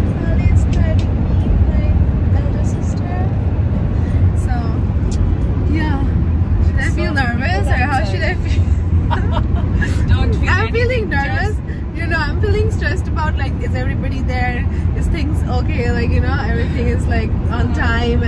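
Steady low rumble of road and engine noise inside a moving car's cabin, with women's voices over it from about six seconds in.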